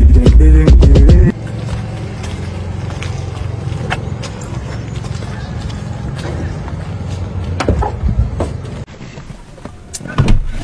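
Loud music with a heavy bass that cuts off suddenly about a second in, followed by the steady low rumble of a car engine running at idle.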